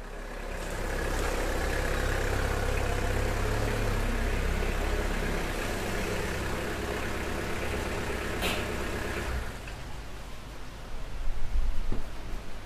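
A small car's engine running at low speed as it pulls into a parking space on wet tarmac, with a short sharp click about eight and a half seconds in. The engine noise drops away near the end, leaving a steady hiss.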